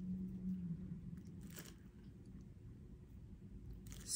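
Faint handling sounds of a small metal bag padlock and its clochette being held up and moved, after a short held hum of voice that fades in the first second.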